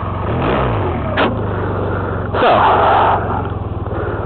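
Honda Rebel 250 motorcycle's air-cooled parallel-twin engine idling steadily, a low even purr. A short click about a second in, and a brief spoken word halfway through.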